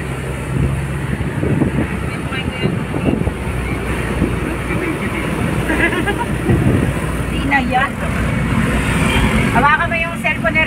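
Steady engine and road noise of a moving vehicle, heard from inside its cabin, with brief voices of passengers in the second half.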